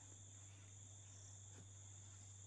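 Near silence: faint steady chirring of crickets over a low steady hum.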